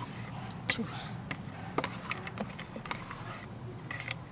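Scattered light clicks and knocks over a low steady hum, with brief fragments of a voice in the background.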